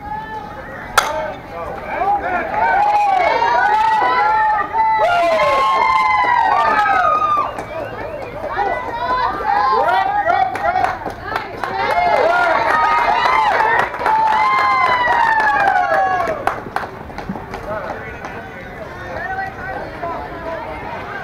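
A fastpitch softball bat hitting the ball with one sharp crack about a second in. Then many voices yell and cheer over each other for most of the time, dying down near the end.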